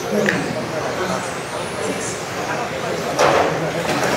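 Electric 1:10-scale RC touring cars racing around an indoor hall track: a thin high motor whine rises and falls as cars pass, over the echoing chatter of voices in the hall. A louder rushing burst comes about three seconds in.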